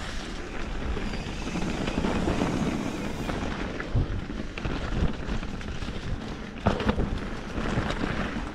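Wind buffeting the microphone of a camera riding on a mountain bike, over the rolling noise of knobby tyres on a trail of dry leaves and dirt. A few sharp knocks from the bike hitting bumps: one about halfway through, another a second later, and two close together near the end.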